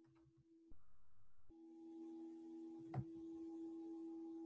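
Faint steady electronic hum made of a few held tones, with one short click about three seconds in.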